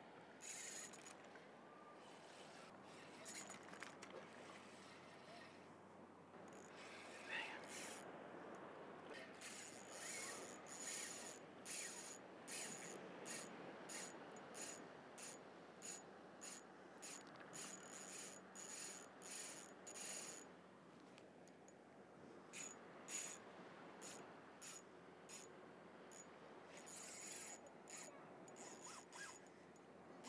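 Small spinning reel clicking in runs of short, sharp ticks as line is reeled in against a fighting fish, over a steady faint background hiss.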